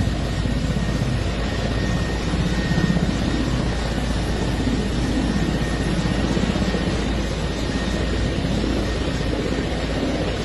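Large military helicopter running on the ground with its main rotor turning: a steady loud rotor chop with a faint high steady whine above it.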